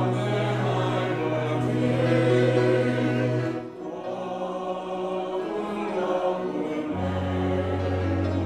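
Congregation singing a hymn together in Romanian over held low notes, with a brief lull between phrases a little under four seconds in.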